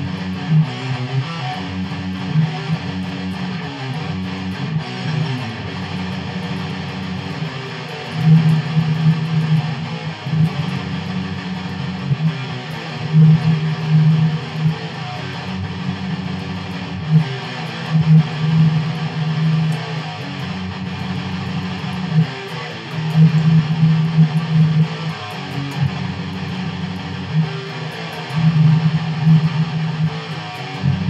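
Electric guitar played through an amplifier with heavy distortion: a repeating riff of low chugging notes, with a louder phrase coming back about every five seconds.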